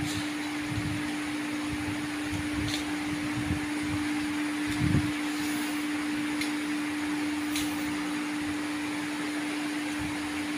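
Steady mechanical hum with a constant low-pitched tone and an even hiss, with a soft thump about five seconds in.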